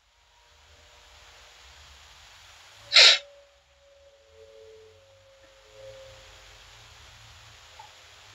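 A single short, sharp burst of a person's breath noise close to the microphone about three seconds in, over a faint steady hiss.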